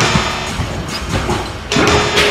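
Music playing, with a few dull thuds of basketballs hitting the hoop, backboard and netting of an arcade basketball shooting machine.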